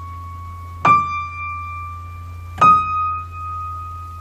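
Single high notes played one at a time on a promotional-grade baby grand piano: one still ringing at the start, then two struck, each a little higher than the last and ringing on until the next. The tone sustains but is brittle, with a wavy overtone, which the dealer puts down to the piano having no aliquot bar.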